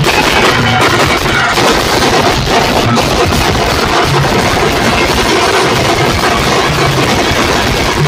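Banjo-party band music: an ensemble of large steel-shelled drums beaten with sticks in a dense, continuous rhythm, with a plucked banjo melody faintly over it.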